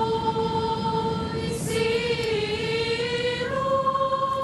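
Choir singing long held notes, the pitch stepping up a little past three seconds in, over a steady background rumble.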